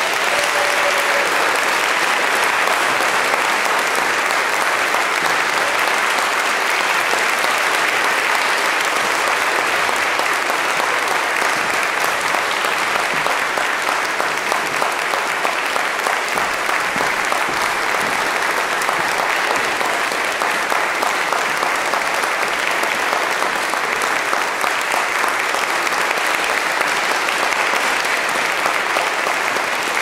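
Audience applauding steadily, a dense even clapping that holds at the same level throughout.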